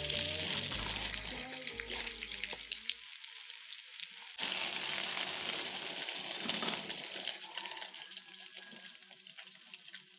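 French toast frying in butter in a small cast-iron skillet, a steady high sizzling hiss with many small crackles. The sizzle grows fainter near the end.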